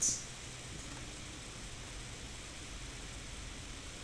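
Faint, steady background hiss of room tone, with no distinct handling sounds.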